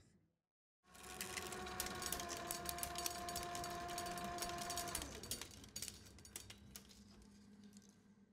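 Spinning film reel on an editing machine: a steady motor whine with dense crackling and ticking. The whine starts about a second in and stops about five seconds in, while the ticking carries on, thinning out and fading.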